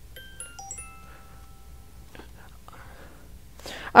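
A short electronic chime: four or five quick notes at different pitches in under a second, the last two ringing on and fading over about a second.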